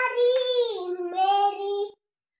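A young boy singing in a high voice, holding long drawn-out notes that step down in pitch; the sound cuts off suddenly near the end.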